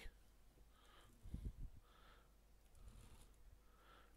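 Near silence: room tone, with a few faint low bumps about a second and a half in.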